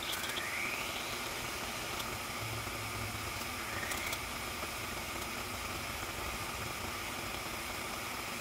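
Water boiling hard in a small saucepan, a steady bubbling hiss. Two faint, short rising tones sound near the start and about four seconds in.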